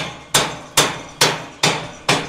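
Hammer blows struck at a steady pace, a little over two a second, five in all, each ringing briefly before the next.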